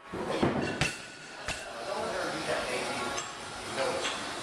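Loaded barbell being set down into the steel hooks of a squat rack: a few sharp metallic clanks and clinks within the first second and a half, then the low din of a gym with people talking.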